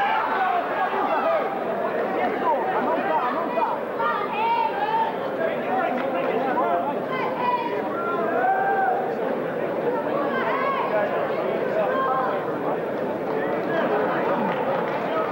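A crowd of spectators shouting and talking over one another, a dense steady babble of many voices with no single clear speaker.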